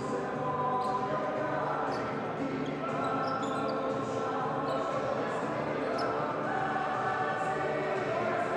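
Basketball game in a sports hall: a crowd of fans chanting in sustained, sung phrases, over the bounce of the ball and short squeaks of shoes on the court.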